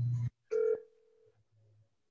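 A low electrical hum cuts off suddenly, then a short electronic tone sounds once and fades, telephone-like, as from a call or notification over the meeting audio.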